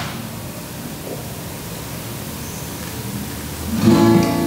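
Steady hiss of room tone through the microphone, with a short rustle at the start. Just before the end, strummed acoustic guitar music begins.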